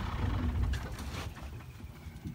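Safari vehicle's engine running with a low rumble that fades away over the first second and a half, with a few faint clicks.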